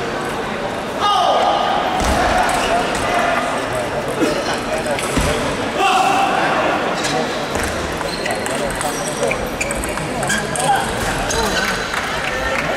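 Table tennis ball knocking sharply against paddles and the table, over the chatter of voices.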